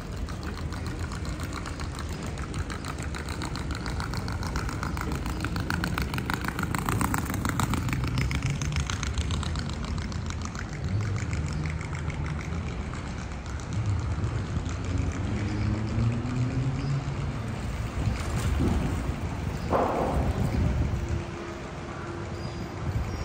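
City street traffic: car engines running and passing on a boulevard, with one engine rising in pitch as it pulls away partway through, and a short knock near the end.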